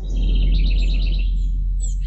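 Birds chirping, a quick run of high chirps in the first half and one falling call near the end, over a steady deep low drone: a dawn ambience bed.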